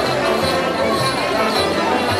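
Live traditional festival dance music with a steady drum beat, a low thump about three times a second.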